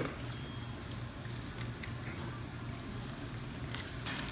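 Quiet eating sounds: faint chewing and a few small clicks over a steady low room hum.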